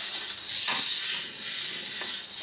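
Green coffee beans tumbling in the Tiny Roaster's motor-driven, perforated stainless-steel drum: a steady high rushing rustle that swells and dips about once a second.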